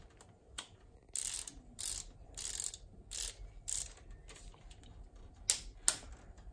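Ratchet wrench tightening a rocker cover bolt: about six short ratcheting strokes, roughly two a second, then a couple of sharp clicks near the end.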